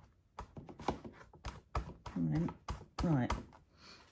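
Clear photopolymer stamp being wiped clean with a baby wipe on an acrylic stamping platform and handled: a run of small clicks and taps, with a couple of short hummed sounds from the crafter partway through.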